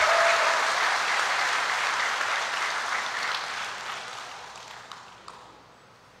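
A large audience applauding, loudest at the start and dying away steadily over about five seconds.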